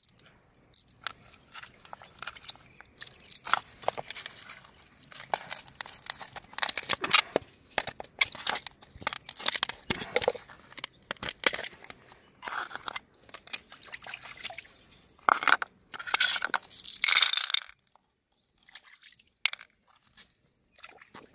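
Wet crunching, squelching and clicking from hands handling large freshwater mussels, prying a shell apart and working through the soft flesh, in irregular bursts that stop near the end.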